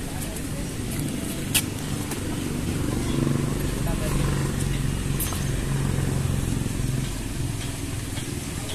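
An engine running nearby, a steady low hum that grows louder for a few seconds in the middle, with a single sharp click about a second and a half in.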